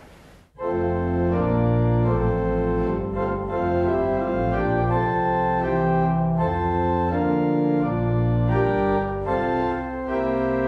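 Bishop and Son pipe organ playing sustained chords with its four-foot principal stop drawn, with a full bass underneath. It comes in about half a second in and changes chord roughly every second.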